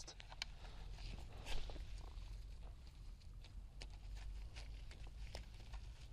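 Faint rustling and scattered small clicks of string being knotted by hand around a young fruit tree's stem and its bamboo stake, with a slightly louder rustle about one and a half seconds in.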